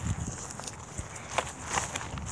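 Footsteps on grassy ground: a few soft, irregular steps.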